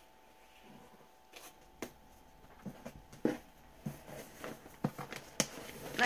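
Scattered clicks, snips and taps of scissors and a glued paper-wrapped box being handled, starting about a second and a half in and growing busier toward the end.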